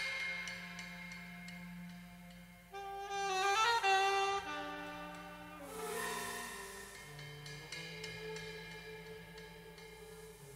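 Live jazz saxophone playing a quick phrase with sliding notes about three seconds in, then held notes over sustained low tones.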